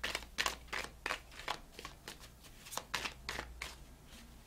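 A deck of tarot cards being shuffled by hand in an overhand shuffle: a run of quick, irregular papery slaps and riffles of card stock, several a second, with a short lull around the middle.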